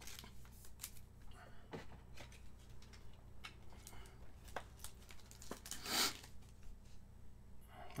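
Baseball trading cards being handled and sorted: small light clicks and slides of card stock, with a brief rustle about six seconds in.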